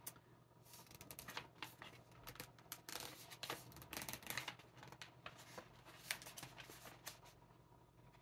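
Paper rustling and crinkling in quick, irregular bursts as a folded paper guide and snack packaging are handled and leafed through, dying down about seven seconds in.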